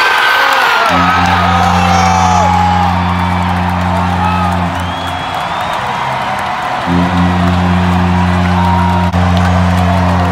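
Arena goal horn sounding in two long, low blasts of about four seconds each, signalling a home-team goal, over a crowd cheering and whooping.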